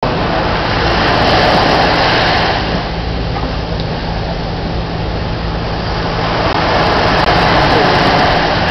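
Surf washing onto a sand beach, swelling twice about six seconds apart, over a steady low motor hum.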